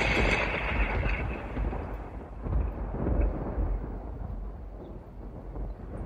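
Thunder sound effect: a long, low rumble of thunder, loudest at the start and slowly dying away.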